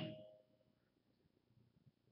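A faint single ringing tone, like a chime, fading away over about the first second, then near silence.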